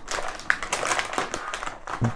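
Metallized anti-static bag crinkling as a hand grips and shifts it, a string of small irregular crackles.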